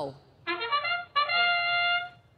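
The robotics field's match-start sound effect, a brass-like horn call marking the start of the autonomous period: a short call, then a long steady held note.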